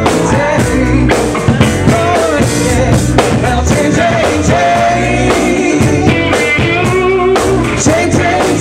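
Live bar band performing: two women singing into microphones with held notes, over electric guitar, bass and drum kit.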